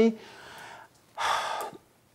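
A man's audible breathing, with no voice: a soft breath trailing off just after his last word, then a louder single breath of about half a second, a little over a second in.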